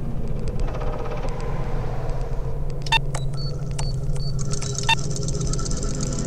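Sci-fi computer-interface sound effects over a steady low rumbling drone. Sharp clicks come about three seconds in and again near five seconds, with three short high beeps between them, then a high hiss.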